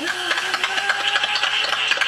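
A small group clapping in applause. The clapping starts suddenly and keeps up throughout, with a held pitched sound underneath it.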